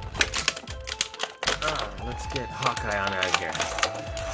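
Clear plastic bag crinkling and crackling in quick irregular bursts as an action figure is worked out of it by hand.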